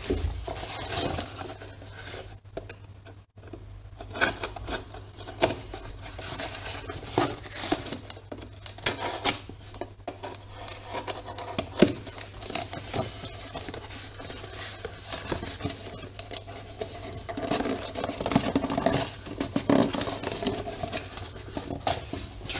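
A small cardboard box being handled and worked at close to the microphone: irregular scraping, tapping and rustling of cardboard and tape, with a brief lull a few seconds in.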